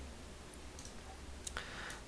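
Faint room tone with a low steady hum, broken by a single sharp click about one and a half seconds in and a short soft hiss right after it.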